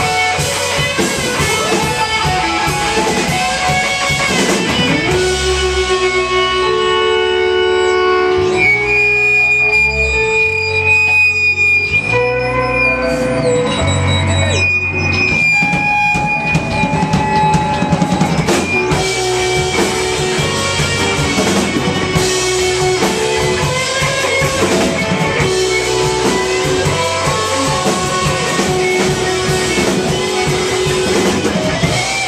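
A live rock band plays loudly: electric guitars, bass, keyboards and a drum kit. For a stretch in the middle the drums thin out, leaving long held guitar and keyboard notes, then the full band comes back in.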